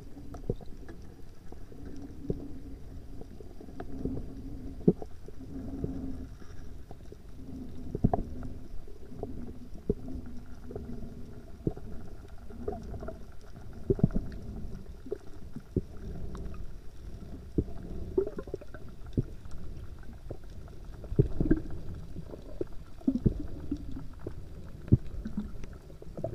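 Muffled underwater sound through an action camera's waterproof housing: a low rumble of water with many scattered sharp knocks and clicks.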